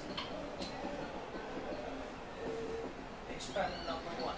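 Faint, indistinct voices in a room, with a brief high squeak rising and falling just before the end.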